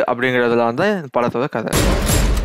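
A man speaking, then near the end a sudden loud rifle shot from a film clip, with a rumbling tail that fades over about a second and a half.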